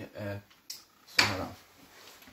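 A short bit of speech, then a small click and a sharp knock about a second in, like something hard being bumped or shut, running into a voice.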